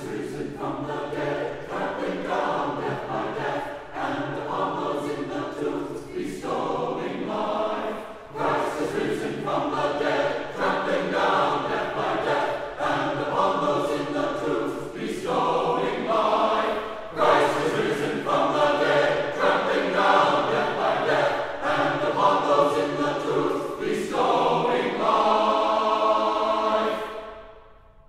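Church choir singing a cappella, in phrases with short breaks between them, closing on a long held chord that dies away near the end.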